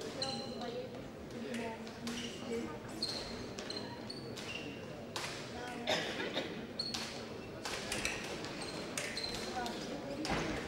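Fencers' shoes squeaking with many short, high squeaks and feet thudding on the piste during footwork, over a low murmur of voices.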